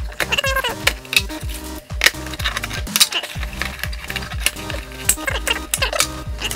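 A metal trading-card tin being opened, with clicks and clatter of its lid and a clear plastic insert being handled, over background music.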